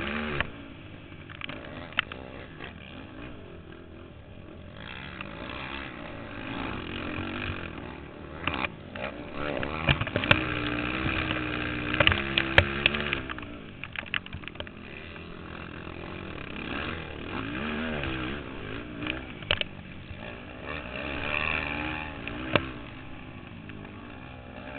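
Racing ATV engine heard on board, revving up and down continually as the quad rides a bumpy dirt motocross track, with frequent knocks and rattles from the bumps. It is loudest in a hard-revving stretch about halfway through.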